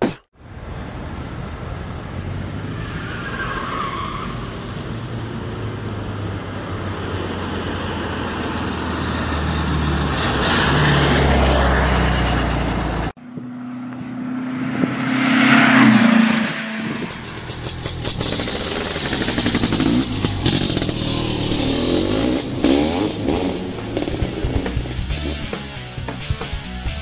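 Outro soundtrack: music mixed with an engine-like sound that builds up and cuts off abruptly about halfway through, followed by a sweep that rises and falls and then more music.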